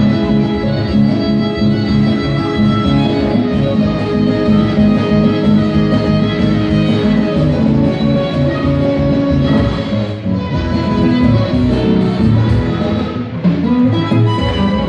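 Live band playing: violin, accordion, guitar and electric bass over drum kit and congas, at a steady, full level.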